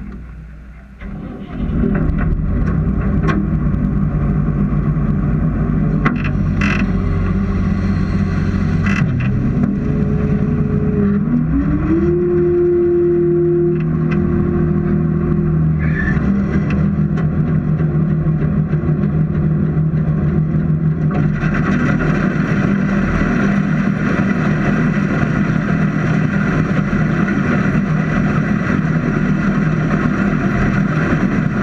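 Combine harvester running close up, heard at its header. The machine comes up to full loudness about a second and a half in. A whine rises and holds for a few seconds around the middle. About two-thirds of the way through the sound grows brighter and harsher as the header's pickup mechanism starts running.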